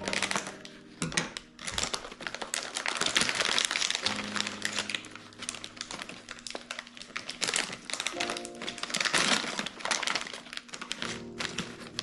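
Crinkly plastic snack bag rustling and crackling as it is cut open with scissors and pulled apart, with soft background music under it.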